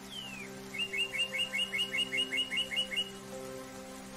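A songbird gives one falling whistle, then a fast trill of about a dozen repeated two-note chirps, about five a second, lasting some two seconds. It sings over soft, sustained ambient music.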